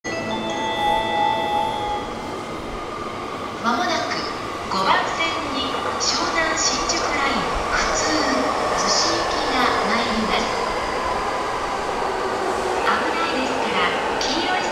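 Railway station platform ambience with a steady hum from nearby trains and a few steady high tones in the first two seconds. From about four seconds in, a voice speaks over it.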